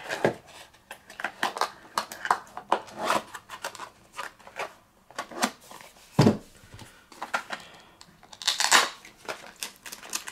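Cardboard deck boxes and decks of sleeved trading cards being handled: paper and plastic rustling, scraping and light clicks, with a dull thump about six seconds in and a longer sliding rustle as a deck goes into a box near the end.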